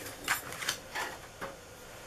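A few faint short knocks and rustles of craft supplies being handled and moved on a desk, then near quiet.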